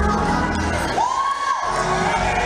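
Church congregation shouting and cheering over music during a sermon. About halfway through, a high note slides up and is held for about half a second.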